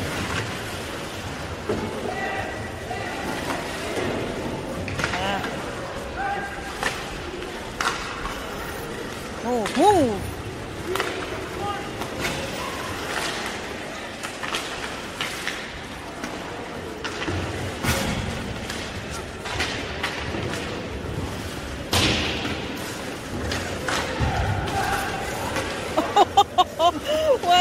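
Ice hockey game sound: indistinct spectator voices and shouts over scattered sharp knocks and thuds of pucks and sticks against the boards and glass, with a loud shout about ten seconds in.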